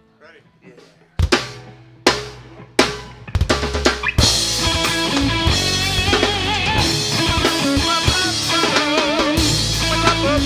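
A live rock band starting a song. About a second in, three loud drum hits come roughly a second apart, then a quick drum fill. At about four seconds the full band comes in with drums, bass and guitars.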